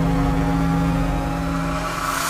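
Hard house track in a breakdown: a held synth chord of several steady tones with a low bass drone and no drums, slowly dipping in level.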